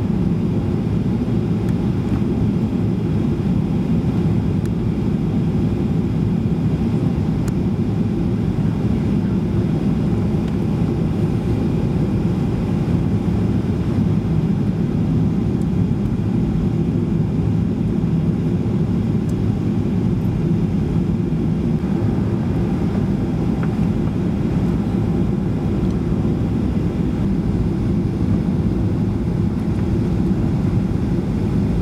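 Steady low rumble of a Boeing 737-800's CFM56-7B engines and airflow heard inside the rear cabin on final approach.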